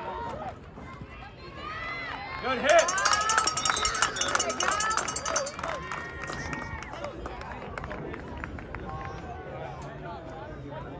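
Sideline spectators and players at a youth football game yelling and cheering during a play. The voices swell about two seconds in and are loudest over the next few seconds, with a rapid rattling noise under them, then drop back to a lower murmur as the play ends.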